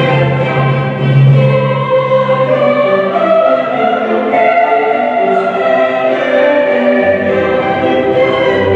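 Mixed choir singing in held, slowly changing chords. The lowest voices drop out about two seconds in and return near the end.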